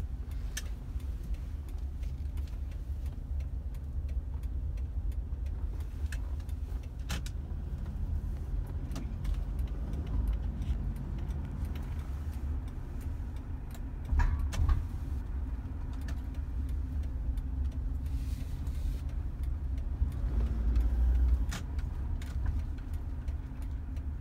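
In-cabin noise of an automatic car driving slowly: a steady low rumble of engine and tyres, with a few faint irregular clicks. The rumble swells briefly about 14 seconds in and again for a second or so around 20 seconds in.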